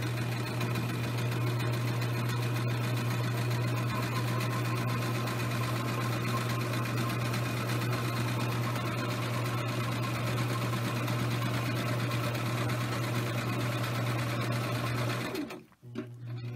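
Electric household sewing machine running steadily, stitching through layered cotton fabric to topstitch a seam beside its long edge. It stops abruptly near the end.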